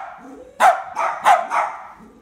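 A spaniel barking three times in quick succession, loud and sharp, about half a second to a second and a half in.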